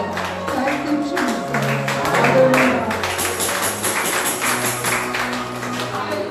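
Live church praise music: sustained low chords under a quick, steady percussion beat, with a bright jingling layer joining about halfway through.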